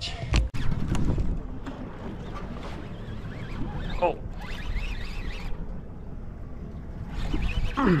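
Wind rumbling on the microphone and water washing against a small boat's hull at sea, with a single thump about half a second in.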